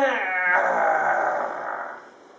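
A man's high, drawn-out whining voice that slides down in pitch into a rough, growling groan, then trails off near the end: a vocal imitation of a small child's frustrated protest at not getting her way.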